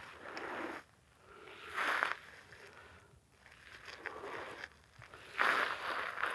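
A person low-crawling over dry, hard-packed dirt: clothing and ghillie suit scraping and rustling against the ground in four short pulls, each about a second long.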